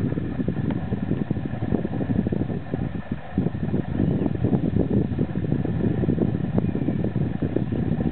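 Wind buffeting the camera microphone: a continuous low rumble that rises and falls in gusts.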